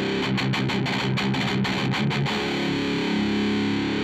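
Distorted electric guitar through a Zoom G3Xn high-gain patch (Tube Screamer-style overdrive into an amp model, rack compressor and 2x12 cabinet, with 100 Hz cut on the EQ), playing a fast chugging riff for about two seconds and then letting a chord ring.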